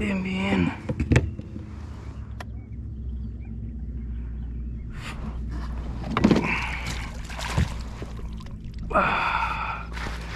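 Handling a landed fish in a landing net beside a plastic kayak: a few sharp knocks and rustling bursts, with short wordless vocal sounds from the angler near the start, over a steady low hum.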